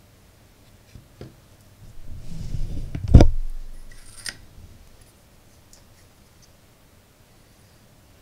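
Handling noises: a brief rustle, then a sharp knock about three seconds in as a glass compact fluorescent bulb is set down on a silicone work mat. A lighter click follows about a second later.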